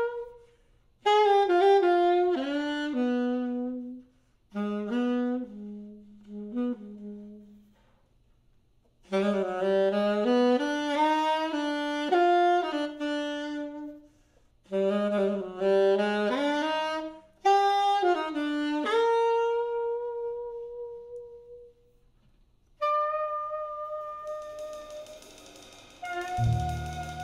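Unaccompanied jazz saxophone playing a solo in short phrases separated by pauses. The later phrases end on long held notes.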